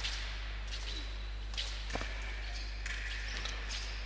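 Foil fencers' footwork on the piste in a sports hall: a few short scuffs and taps of shoes as they move back and forth in guard, over a steady low hum.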